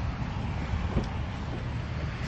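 Wind rumbling on a phone microphone outdoors, with low road-traffic noise underneath and a faint click about a second in.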